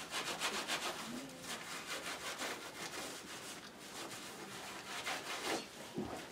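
Quick back-and-forth rubbing strokes on the surface of a painted board, several strokes a second, busiest in the first second and a half.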